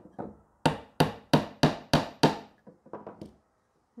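Hammer driving a small flat-headed nail into the wooden side bar of a beehive frame: a quick run of sharp strikes, about three a second, then a few lighter taps near the end as the nail is left about three-quarters of the way in.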